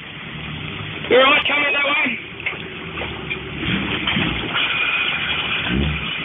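Jeep Cherokee XJ engine running at low revs as it crawls over rocks in a creek, with a man's voice calling out loudly about a second in and more talk toward the end.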